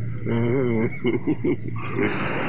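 A man's voice: a drawn-out call with a wavering pitch, then a quick run of short vocal pulses, over a steady low hum.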